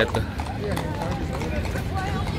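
Horses' hooves clip-clopping on stone paving as horse-drawn carriages pass, among the chatter of a crowd.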